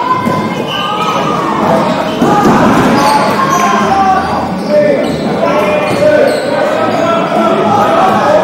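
Dodgeballs being thrown and bouncing off a wooden court floor, echoing in a large hall, under many players' voices shouting across the court. It grows louder about two seconds in.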